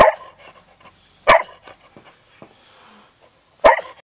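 A red heeler (Australian cattle dog) barking three times, single sharp barks spaced a second or more apart: one at the start, one just over a second in, and one near the end.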